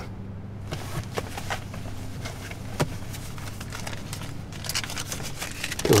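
Soft rustling of clothing and paper with small clicks and taps as a man digs out and handles banknotes, with one sharper click near the middle.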